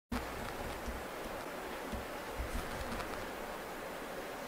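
Steady low hiss of room noise picked up by a handheld camera's microphone, with a few soft low bumps from the camera being held and moved.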